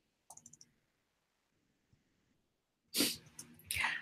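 A few faint clicks of a computer mouse near the start, then near silence. About three seconds in comes a short, loud rush of noise, followed by a smaller one just before speech begins.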